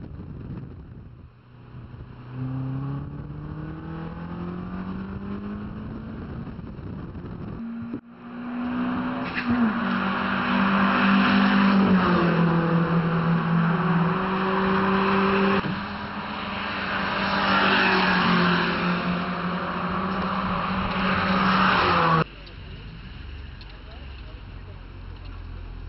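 Toyota MR2 Spyder's 1.8-litre four-cylinder engine heard from the open cockpit, its pitch rising steadily as the car accelerates on track. About eight seconds in, the sound cuts to louder trackside car engine noise with wind on the microphone, the engine pitch stepping down a few times, until it cuts off abruptly near the end.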